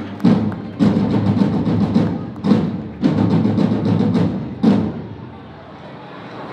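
Tabal drums of a ball de diables playing a loud rolling beat between verses, with several heavy accented strikes over the first few seconds that die away near the end.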